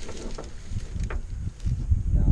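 Wind buffeting the microphone, a low rumble that grows stronger near the end, with a few light knocks.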